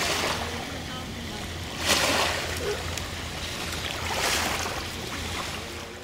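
Wind rushing over the microphone on open water, with waves lapping, and two louder gusts about two and four seconds in; the sound fades out at the very end.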